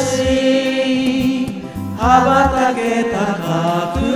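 Several amateur voices sing a Japanese pop ballad along to a karaoke backing track with bass. They hold long notes, dip briefly, then start a new phrase about two seconds in.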